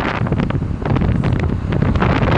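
Wind rushing and buffeting against a phone microphone from a moving vehicle, loud and gusty, with the vehicle's low road rumble underneath.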